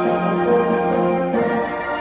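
Concert band playing, with brass sustaining full chords that move to a new chord about one and a half seconds in.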